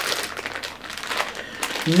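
Clear plastic packaging crinkling as it is handled: a dense run of small crackles without a break.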